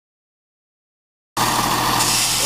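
Dead silence for more than a second, then a sudden cut-in of a Class 170 Turbostar diesel multiple unit's engines running steadily at the platform.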